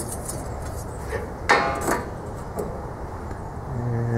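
A steel square handled against steel tubing: one sharp metallic clank that rings briefly about one and a half seconds in, with a lighter knock just before it.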